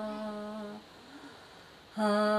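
A woman singing a traditional Bhutanese song unaccompanied. She holds one long, steady note that fades and breaks off under a second in. After a pause of about a second, she comes in on the next note near the end.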